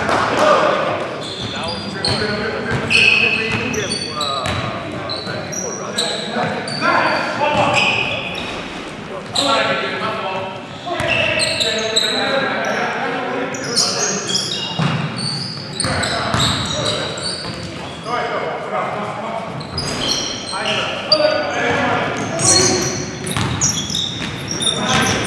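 Live sound of an indoor basketball game: the ball bouncing on the hardwood floor and players' indistinct shouts and calls, with short high squeaks from shoes. It all echoes in a large gym.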